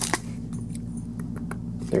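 A few faint clicks and light handling noises from a foil trading-card booster pack being worked open, over a steady low hum.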